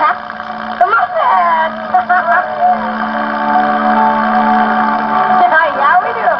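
Voices from a TV broadcast played back off a home cassette recording through a boombox speaker, sounding muffled. Under them a steady low note is held until near the end.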